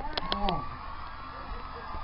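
A brief fragment of a voice with two sharp clicks in the first half-second, then faint steady background with a thin held tone that fades away.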